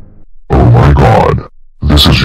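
Background music cuts off, then a very loud, distorted, low growling voice-like sound comes twice, each lasting about a second.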